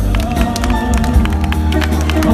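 Live amplified song: a male voice sings into a handheld microphone over a backing track with a steady beat.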